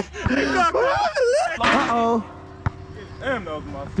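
Men's voices calling out and laughing in rising and falling tones, with a single sharp knock about two and a half seconds in.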